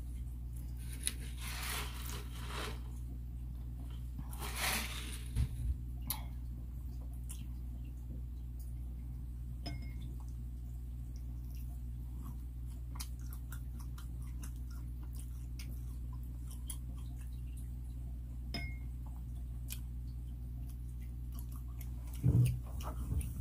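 Close-miked chewing of shrimp and spaghetti, with scattered small clicks of a fork against a plate, over a steady low hum. Two longer breathy hisses come in the first five seconds.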